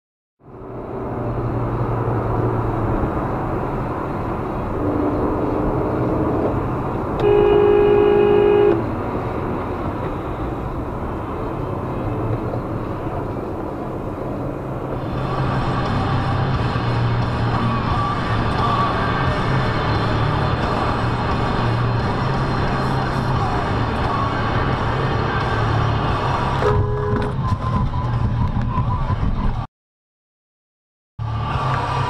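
Car horn sounding one held blast of about a second and a half, about seven seconds in, over steady vehicle and road noise; a second short horn toot comes near the end.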